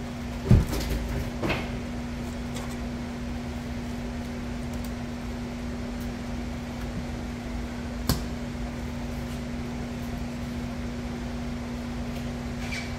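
A steady low hum of a machine runs throughout. Over it come knocks from filleting a fish on a plastic cutting board: a loud thump about half a second in, a softer one a second later, and a sharp tap near eight seconds.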